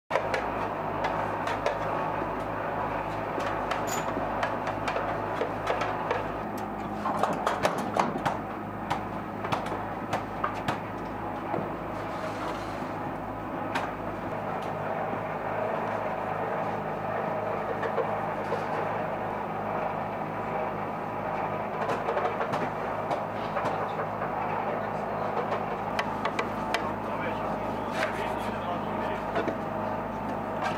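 Steady hum of field-bakery machinery, with scattered knocks and clatter of metal bread tins and indistinct voices in the background; the clatter is busiest about seven to eight seconds in.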